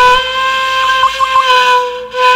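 Background music: a woodwind, flute-like, holding one long note, with a few quick grace notes about a second in, breaking off near the end.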